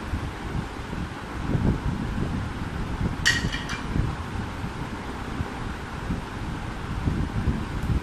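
Unsteady low rumble of moving air buffeting the microphone, with a brief sharp clink a little over three seconds in.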